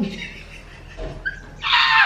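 A woman's short, high-pitched squeal of laughter near the end, a reaction to the burn of super-spicy noodles.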